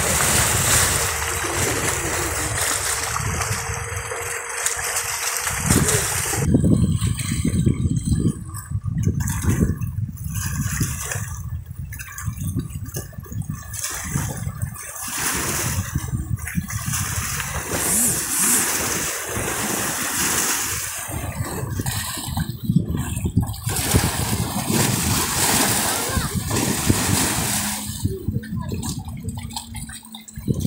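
Lake water sloshing and splashing in the broken cavity of a collapsed concrete pier, with wind on the microphone for the first several seconds.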